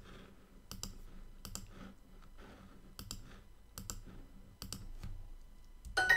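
Computer mouse button clicks, about six, each a quick double tick of press and release, spaced roughly a second apart.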